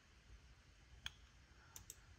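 Near silence broken by a single computer mouse button click about a second in, then two fainter clicks near the end.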